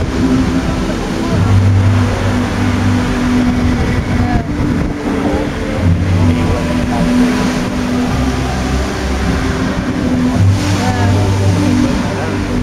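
Water jets of a large musical fountain rushing and splashing into a lake, mixed with crowd voices. A few low held tones come and go over it.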